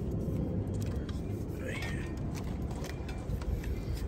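Steady low background rumble with faint clicks and rustles of plastic wiring-harness connectors and wires being handled.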